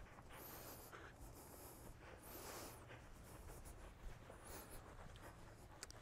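Near silence, with a few faint soft swishes.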